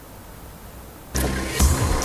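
Quiet outdoor background, then about a second in a sudden change to an off-road 4x4's engine working as it climbs over rocks, with music coming in at the same moment.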